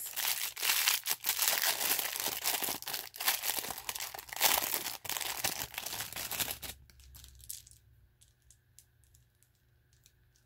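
Crinkling and rustling of a small clear plastic bag being handled and opened. The crackle stops about two-thirds of the way through, leaving only a few faint light clicks.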